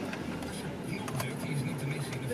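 Steady blowing of a car's air conditioning with the engine running, heard inside the cabin, with a few faint clicks and a faint murmuring voice.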